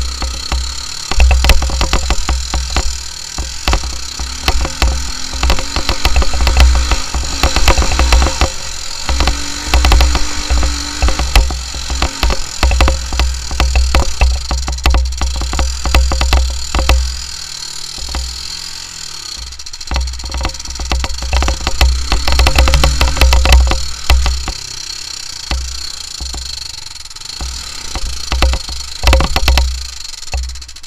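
Honda 300EX ATV's single-cylinder four-stroke engine running while riding over a bumpy dirt trail, its pitch rising and falling with the throttle, with heavy wind buffeting on the microphone and frequent knocks and rattles from the bumps. The owner says the engine's valves need adjusting.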